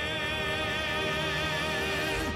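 Ending theme song: a singer holds one long note with wide vibrato over steady instrumental backing.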